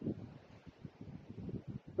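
Wind buffeting the microphone: a faint, low, uneven rumble.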